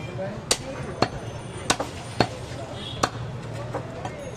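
Heavy butcher's cleaver chopping goat meat on a wooden chopping block: six sharp chops at uneven gaps of roughly half a second to a second.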